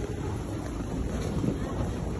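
Steady low rumble of wind noise on a handheld microphone carried along at walking pace through a busy covered shopping arcade.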